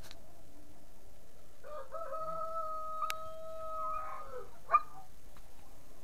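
A rooster crowing once, a long call held on one pitch that drops at the end. Near the end a single sharp knock, louder than the crow.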